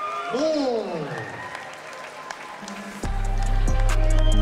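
Crowd applauding, with long falling voiced calls at first. About three seconds in, a loud music track with heavy bass cuts in abruptly.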